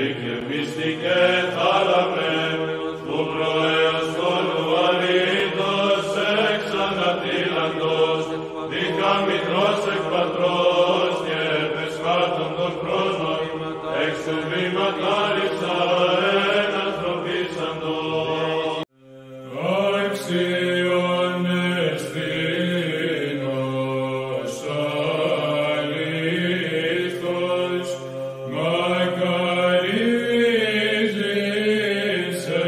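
Orthodox church chant: sung voices moving slowly over a held low note. It breaks off abruptly about nineteen seconds in, and a new chant begins at once.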